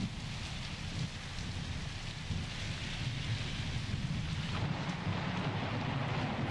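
Steady rain falling, with a low rumble underneath, as an interlude between tracks.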